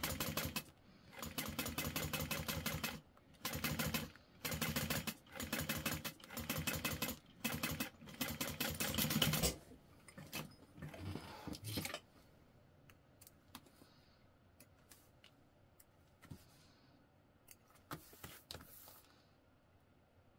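Juki industrial sewing machine stitching through vinyl in about eight short stop-start runs of rapid, even ticking over the first nine seconds or so. After that it is mostly quiet, with a few faint clicks as threads are snipped.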